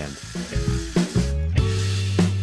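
Background music with a steady bass line, over the hiss of an angle grinder's disc cutting through a steel strip, strongest in the second half.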